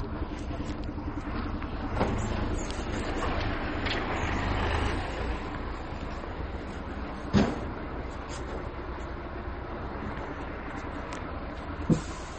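A motor vehicle's engine running, heard as a steady low rumble that grows louder for a few seconds early on and then settles. Two sharp knocks sound over it, one about seven seconds in and one at the very end.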